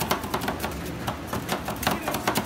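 Two metal spatulas rapidly chopping and scraping on the steel plate of a rolled-ice-cream cold pan, mashing candy into the liquid base as it freezes: a fast, irregular clatter of metal-on-metal clicks.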